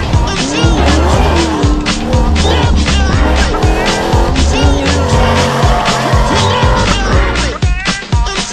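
Ford Ranger rally truck's engine revving up and down at speed, mixed with a backing music track that has a steady beat.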